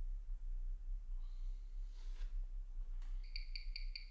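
A faint low hum, then from about three seconds in the ticking of a Valjoux 22 chronograph movement picked up and played through a timegrapher's speaker: even, sharp ticks at five a second, the watch's 18,000 beats per hour.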